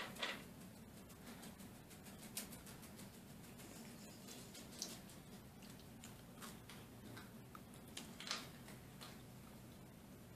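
Quiet room with a low steady hum and faint, irregular small clicks: soft chewing and fingers pulling apart doughnuts.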